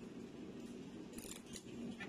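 Fresh arugula (gerger) being picked apart by hand: a few short, crisp snaps of stems breaking a little over a second in, over a steady low hum.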